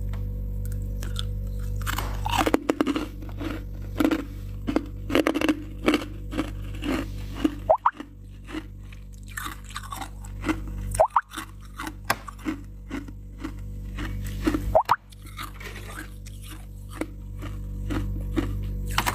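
Freezer frost being crunched and chewed close to the microphone: a rapid run of crisp crunches, with several louder cracks spread through, over a steady low hum.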